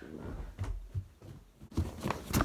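Handling noise from a hand-held camera being carried and jostled: soft, irregular thumps and rubbing, with a few short knocks, the loudest near the end.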